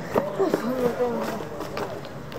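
Children's voices murmuring and exclaiming briefly in the first second, with a few short taps of footsteps as they hurry up and gather round.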